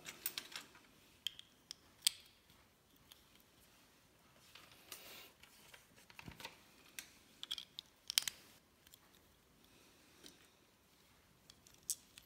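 Plastic LEGO bricks clicking as they are pressed onto a brick plate and handled, with light rattling of loose pieces: scattered sharp clicks, the loudest about two seconds in and around eight seconds.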